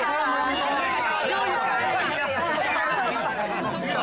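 Several people talking at once in Cantonese: overlapping, lively chatter from a group around a table.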